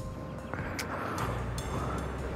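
Kawasaki Ninja sport bike's engine idling quietly and steadily.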